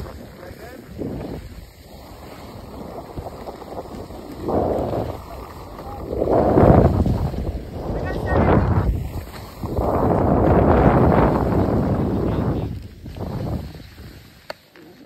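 Wind rushing over the microphone and skis scraping over packed snow while skiing, swelling in several loud surges through the second half.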